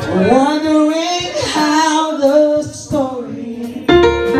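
A woman singing a gospel line with sliding, bending pitch, over an electronic keyboard; a fresh keyboard chord comes in loudly just before the end.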